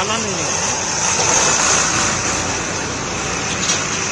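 Steady vehicle and road noise, swelling a little a second or so in as a vehicle goes by, with a man's voice briefly at the start.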